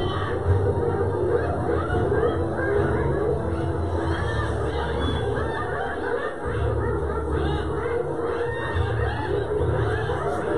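A crowd of spotted hyenas calling around a kill guarded by lions: many overlapping rising-and-falling calls and cackles, over a steady low rumble.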